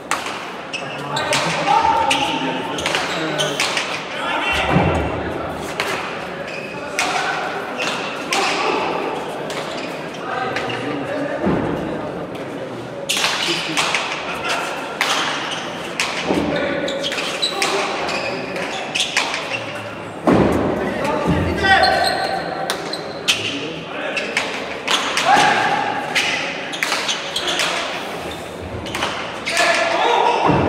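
Leather hand-pelota ball struck bare-handed and bouncing off the walls and floor of an indoor trinquet court: repeated sharp, echoing smacks at an irregular pace through a rally, with voices in the hall.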